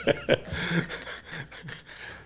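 Two men laughing, breathy and in short bursts that trail off toward the end.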